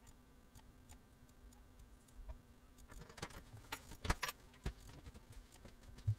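Quick computer mouse clicks, a cluster of them from about three to nearly five seconds in, over a faint steady hum.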